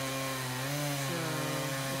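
Chainsaw running under load, cutting into the trunk of a cedar tree, its engine held at a steady pitch.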